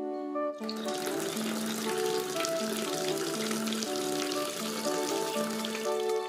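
Water running and splashing at a plastic bucket, starting about half a second in and stopping at the very end, over background music with a steady melody.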